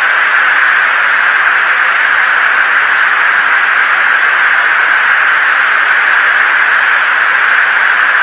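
Steady hiss of a fighter jet's cockpit radio and intercom audio between the aircrew's transmissions, an even band of noise sitting in the middle of the range.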